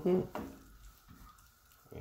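A wooden spoon stirring vegetables and flaked mackerel in a stainless steel pan on the heat. It makes a few soft, quiet scrapes and knocks over a faint sizzle.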